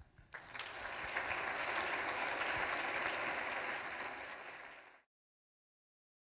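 Audience applauding, a dense even clapping that starts just after the last spoken words and cuts off suddenly about five seconds in.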